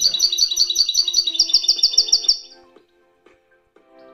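A finch singing: a fast run of high repeated twittering notes that closes with a quicker series of sharp strokes and stops about two and a half seconds in. Faint music follows.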